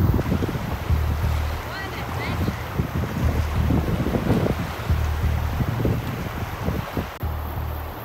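Rushing river water with wind noise on the microphone, under background music with a slow, deep bass line. A faint voice is heard briefly about two seconds in.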